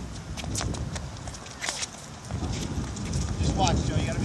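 Scattered sharp taps of a soccer ball being kicked and sneakers striking a hard court surface, over steady wind rumble on the microphone.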